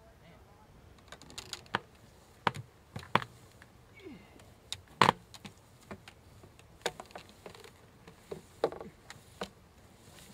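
Launch pad hardware being handled while a high-power rocket is set up: scattered, irregular sharp clicks and knocks, the loudest about five seconds in.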